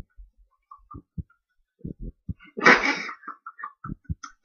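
Soft, irregular bumps and knocks of a hand against the microphone, with one loud, short breathy burst about two and a half seconds in.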